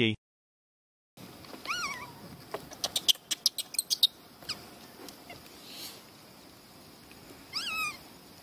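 A baby rhesus macaque giving two short, high coo calls that rise and fall in pitch, one about two seconds in and one near the end. A quick run of sharp clicks comes in between.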